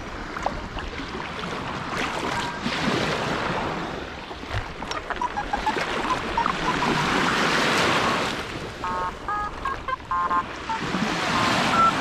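Shallow sea water sloshing around a wader's legs, with short electronic target beeps from a Quest X10 Pro metal detector coming through muffled, its open rear speaker flooded with water. A few faint beeps come about five seconds in, then a quick run of beeps a few seconds later.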